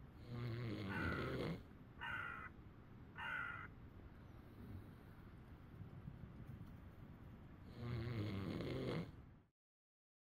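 Scottish Blackface sheep bleating: a long, low bleat near the start and another about eight seconds in, with two short, higher calls between them. The sound cuts off suddenly near the end.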